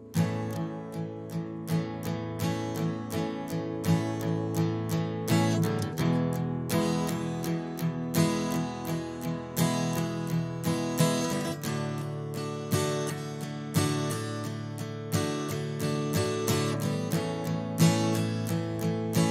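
Jumbo acoustic guitar strumming open major chords (A, E and D major), a steady run of strokes that changes chord every few seconds.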